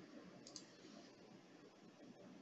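Near silence, with one faint, short computer mouse click about half a second in.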